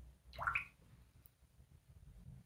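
A single short watery plip that rises in pitch, about half a second in: a watercolour brush dipped into the water jar.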